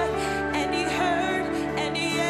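A woman singing a slow worship song live, her voice wavering in vibrato on held notes, over a band with electric guitar and sustained chords underneath.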